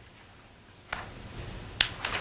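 Two sharp clicks, about a second apart, the second louder, over faint room noise.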